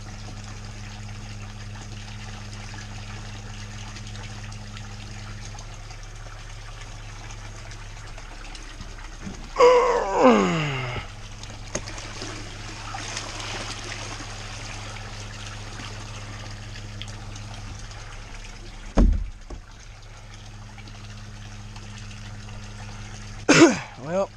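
Water from a submersible pump's PVC return pipe splashing steadily into a pool pond, over the pump's steady low hum. About ten seconds in a person's voice breaks in briefly, falling in pitch, and a dull thump comes near the end.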